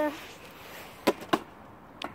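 Part-filled plastic drinks bottle landing on tarmac after a flip: two sharp knocks about a quarter second apart as it bounces once and comes to rest upright.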